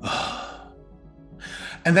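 A man's long breathy sigh at the start, acting out a boss's impatient, eye-rolling reaction to an admitted mistake. Faint background music plays under it.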